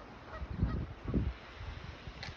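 A goose honking faintly a few short times, over low rumbles of wind on the microphone that are the loudest sound.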